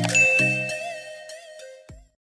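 A subscribe-button sound effect: a bright bell-like ding over the last notes of outro music, ringing on and fading away, with a short click just before the sound cuts off.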